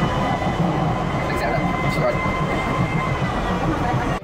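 Docklands Light Railway train running, heard from inside the carriage: a steady rumble of wheels on the track with a faint, steady whine above it.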